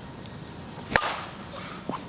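A bat striking a pitched ball once, about a second in: a single sharp crack with a short ring after it.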